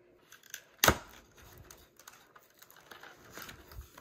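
One sharp knock about a second in, then faint scattered clicking and rustling as a cardboard box and its packaging are handled.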